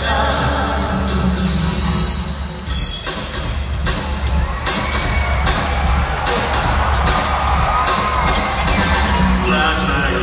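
Live band music in a large hall, recorded from the audience. For the first few seconds the crowd cheers over the music, then an instrumental stretch with a steady drum beat of about three hits a second takes over.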